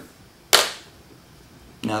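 A single sharp crack about half a second in, dying away quickly in the room.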